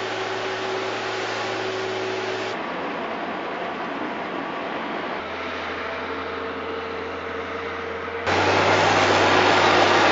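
Diesel engines of heavy construction machinery, a crawler drill rig and an articulated dump truck, running steadily with a low hum under a noisy rumble. The sound changes abruptly three times, and a louder stretch starts near the end.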